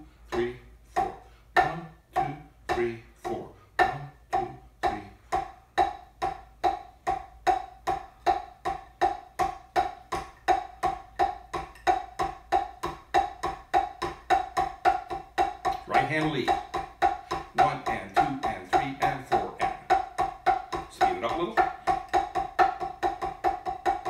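Drumsticks playing alternating single strokes on a rubber-topped practice pad, each hit a crisp tap with a slight ring, speeding up gradually from slow, evenly spaced strokes to a fast, steady stream of sixteenth notes. The sticks are played with the open-close (push-pull) hand technique.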